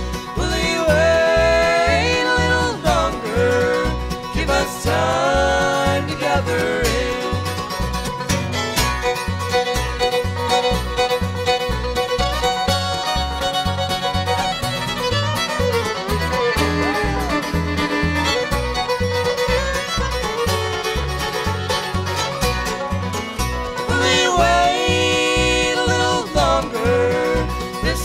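Bluegrass band playing an instrumental break between verses: fiddle leads with sliding notes, backed by banjo, mandolin and guitar, over an upright bass keeping a steady beat. The fiddle lines are most prominent in the first few seconds and again near the end.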